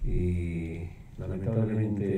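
Speech: a man talking in Spanish in a low voice, drawing out his syllables, in two phrases with a short break about a second in.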